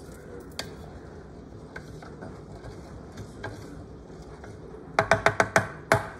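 A wooden spoon knocking against a metal saucepan while stirring rice and broth. It makes a quick run of about six sharp, ringing knocks about five seconds in, after a stretch of only quiet, steady background with a few faint clicks.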